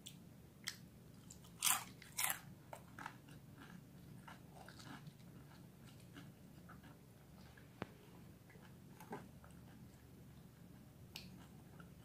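A bite of crispy fried samosa pastry: two loud crunches about two seconds in, then quieter crackling chewing.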